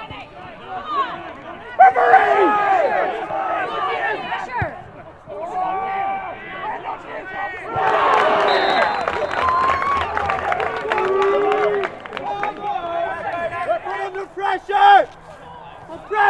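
Voices shouting and calling out across a football pitch, with a louder stretch of many voices shouting together from about eight seconds in for some four seconds.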